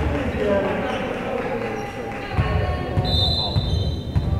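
Volleyball match in a gym: voices of players and onlookers, thuds of a volleyball on the hardwood floor, and a short steady blast of a referee's whistle about three seconds in.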